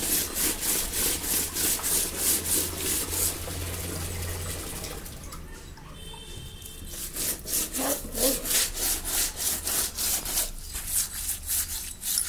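A whole fish rubbed back and forth with coarse salt against a rough concrete floor to strip its scales, a regular rasping about three strokes a second. The strokes pause for about two seconds midway, then resume.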